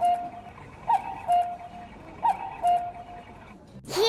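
Cuckoo clock calling "cuck-oo" about three times, each call a short higher note followed by a lower held note, with a click from the mechanism at each note.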